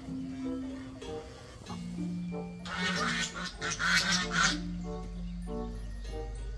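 Background music with a steady melody; about three seconds in, a hen in the nest crates gives a loud burst of several harsh squawks lasting under two seconds.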